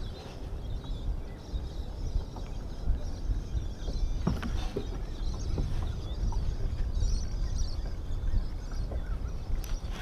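Steady wind noise on the microphone over water lapping at a kayak, with a spinning reel being wound in and a few light clicks.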